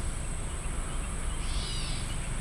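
A songbird gives one short, arching call near the end, over a steady high-pitched drone and a low rumble.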